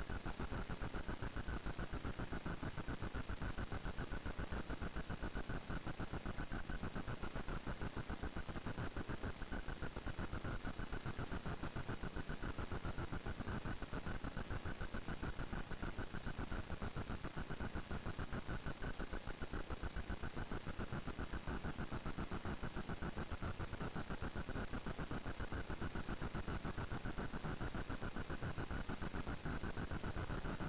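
Steady static and hiss from an open audio feed with no one talking, with a thin high whine running through it.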